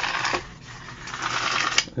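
Small metal tape measure built into a handheld laser level reeling back in after its retract button is pressed: a rattling hiss in two stretches, ending in a sharp click as the tape snaps home near the end.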